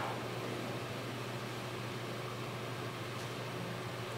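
Steady room tone: a low hum with an even hiss and nothing else happening.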